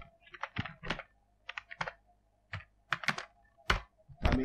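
Typing on a computer keyboard: about seven separate keystrokes, irregularly spaced, with the loudest stroke near the end.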